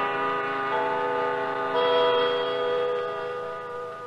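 Orchestral brass music bridge between radio drama scenes: sustained chords that shift twice and fade near the end.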